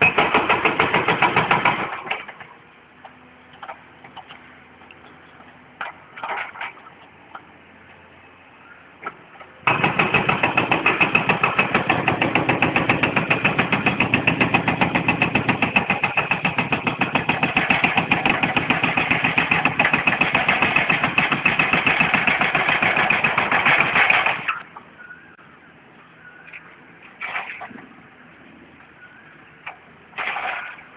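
Excavator-mounted hydraulic breaker hammering at the base of a mill chimney, a rapid even rhythm of blows. A short burst comes right at the start, then a long run of about fifteen seconds begins near the middle and stops suddenly.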